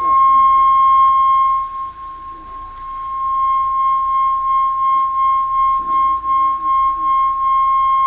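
Public-address loudspeaker feedback: a loud, steady high whistle held at one pitch, fading somewhat about two seconds in and building back up a couple of seconds later.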